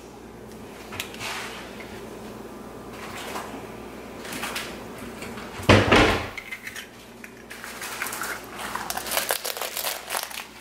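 Eggs being cracked and separated into ceramic bowls: light taps and clicks of shell and bowl, with one louder low knock about six seconds in and a run of small clicks near the end.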